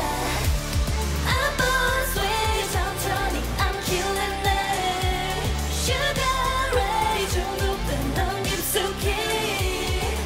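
K-pop dance-pop song: female vocals sung over a steady beat with deep bass.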